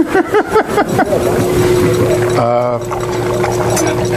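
Emery Thompson 12NW batch freezer running with a steady hum, joined by a held steady whine about a second in. Laughter and voices sound over it at the start.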